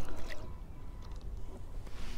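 Quiet, steady low outdoor background rumble, with a few faint small clicks.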